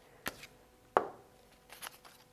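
Three short, light knocks and clicks a little under a second apart, from a glue stick being set down on a tabletop and a paper picture card being handled.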